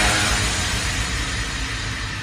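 Trailer soundtrack dying away after a heavy impact hit: a noisy wash with faint held tones, fading steadily.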